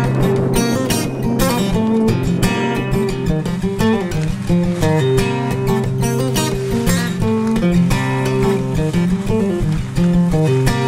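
Background music: acoustic guitar strummed in a steady, continuous rhythm.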